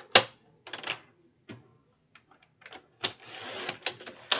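Sliding-blade paper trimmer in use: a sharp click just after the start, a few lighter clicks and taps as the sheet is set against the rail, then about a second of rasping near the end as the blade is run down the rail through the paper.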